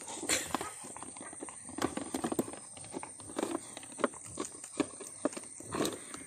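Rottweiler chewing on a red rubber toy: irregular soft clicks and knocks of teeth on rubber, a few each second.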